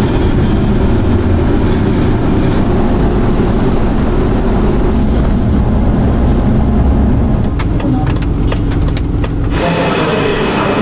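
A car on the move, heard from inside the cabin: a steady low rumble of engine and road noise. A run of short, sharp clicks comes near the end.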